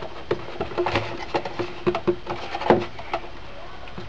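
Irregular light taps and clicks of a metal ruler, pen and milk carton being handled on a cutting mat while marking lines. The loudest tap comes near the end.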